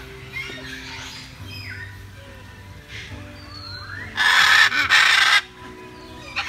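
Blue-and-yellow macaw giving one loud, harsh squawk lasting over a second, about four seconds in, broken briefly in the middle.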